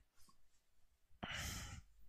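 A man's faint, breathy exhale, like a sigh, starting about a second in and lasting about half a second, with near silence around it.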